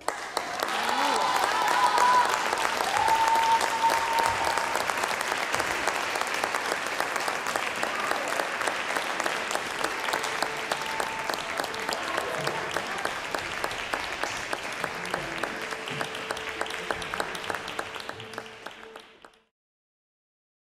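Concert hall audience applauding at the end of a song: the clapping breaks out suddenly, holds steady, and fades away just before the end, with a few voices heard over it in the first few seconds.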